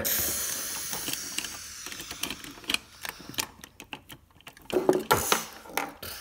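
Small plastic toy pieces being handled inside a toy garbage truck's plastic container: a soft rustle, then a scatter of light plastic clicks and rattles through the middle seconds.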